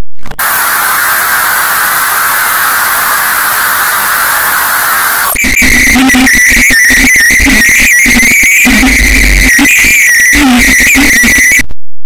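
Harsh, heavily distorted, effects-processed audio. A loud hiss of noise lasts about five seconds, then gives way to a choppy, stuttering sound with a steady high tone, which cuts off abruptly just before the end.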